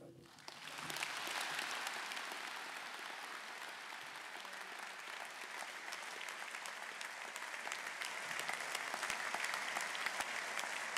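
Large audience applauding: the clapping swells in within the first second and then holds steady.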